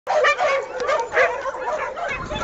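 A pack of dogs barking and yelping over one another in a dense, continuous din, the noise of several dogs setting on another dog.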